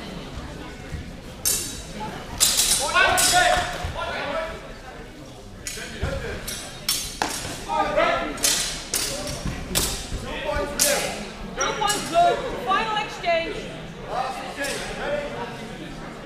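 Steel fencing swords striking each other in a HEMA bout: a string of sharp clashing hits with a short ring after each, irregular, coming thickest from about two seconds in. Voices call out between the hits, echoing in a large hall.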